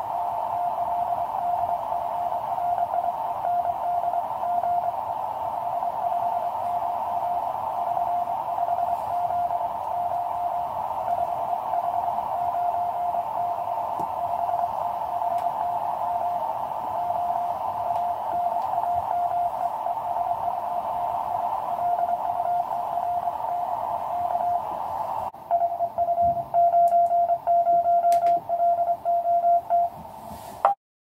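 Morse code (CW) heard on a QCX low-power transceiver's receiver: a keyed tone of about 700 Hz in a narrow band of band noise on 20 m. About 25 seconds in, the hiss cuts off suddenly and a louder keyed sidetone takes over, the sign of the radio switching to transmit.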